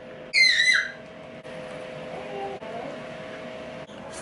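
A brief high-pitched squeal that falls in pitch, about a third of a second in, followed by a steady low electrical hum.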